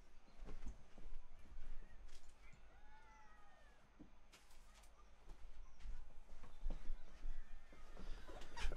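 Quiet room with a few faint knocks, and about three seconds in a single pitched call that rises and then falls.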